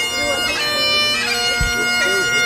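Bagpipes playing a tune: steady drones held under a chanter melody that moves from note to note every half second or so.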